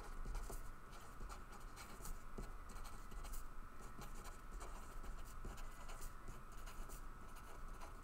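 A marker pen writing words on a sheet of paper: faint, irregular scratching strokes with short breaks between them.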